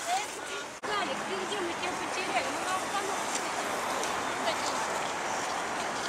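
Busy city street ambience: a steady wash of traffic noise with scattered voices of people nearby, and a brief dropout under a second in where the recording cuts.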